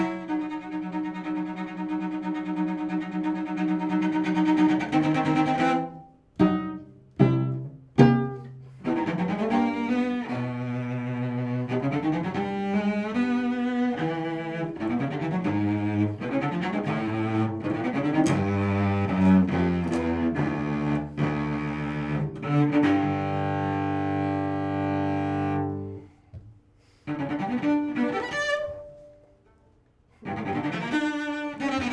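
Cello played with the bow: a flowing passage of pitched notes, with a few short, sharply separated strokes around six to eight seconds in and long held low notes from about twenty-three seconds. It breaks off, plays a few more notes, and stops just before the end.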